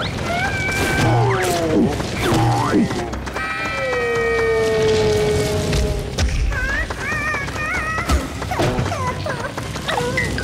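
Cartoon soundtrack: background music mixed with wordless, squeaky character vocal sounds and comic sound effects. A long held tone slides slightly downward from about three and a half to six seconds in, and there are a few sharp knocks.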